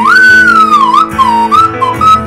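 Slide whistle playing a melody in gliding notes: a high held note that slides down about a second in, then shorter notes swooping between pitches. Underneath is a recorded backing track of the song.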